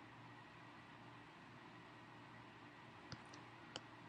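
Near silence: faint room hiss, with two short, faint computer-mouse clicks near the end.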